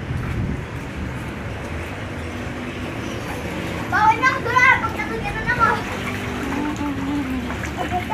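Children's high-pitched shouts and squeals, bunched together about four seconds in, as they play in a small inflatable paddling pool, over a steady low background rumble.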